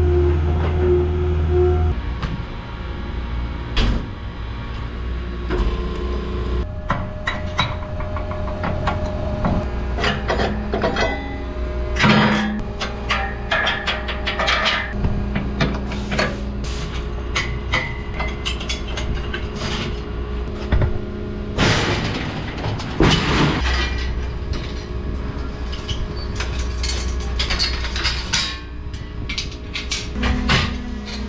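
Skid steer engine running at the start, then repeated metal clanks, knocks and rattles as the steel gates and fittings of a cattle hoof-trimming chute are worked.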